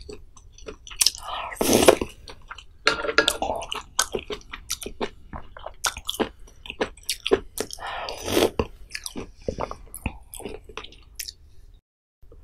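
Close-miked mouth sounds of eating spicy pollack-roe soup with rice: wet chewing with many small clicks, louder about two seconds in and again near eight seconds.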